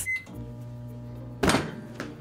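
A microwave oven keypad beeps once, then the oven starts and runs with a steady hum. A short sharp knock comes about one and a half seconds in.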